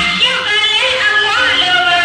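Music with a high singing voice that slides up and down between notes.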